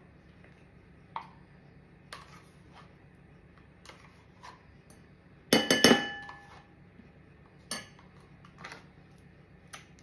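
Metal spoon clinking against a small yogurt pot and a bowl while scooping yogurt out: scattered light taps, then a quick run of loud knocks with a brief ring about halfway through, and a few more taps after.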